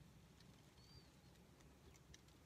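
Near silence: a faint low background rumble, with one brief, faint high chirp a little under a second in, typical of a bird outside.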